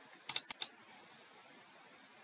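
Computer mouse button clicked four times in quick succession, about a third of a second in. Each is a short, sharp click.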